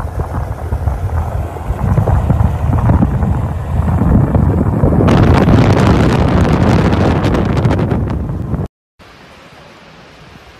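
Wind buffeting a phone microphone from a moving car, mixed with road rumble, growing louder and then cutting off suddenly near the end. A much quieter steady hiss follows.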